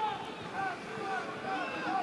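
Football stadium ambience: a steady background of crowd noise with several faint voices calling out on and around the pitch.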